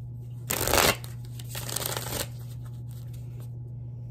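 A deck of tarot cards being shuffled by hand in two bursts: a short, loud one about half a second in, and a softer, longer one about a second later.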